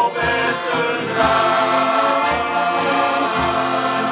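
Shanty choir of men singing a sea shanty together, accompanied by piano accordions, with a low bass note sounding about once a second.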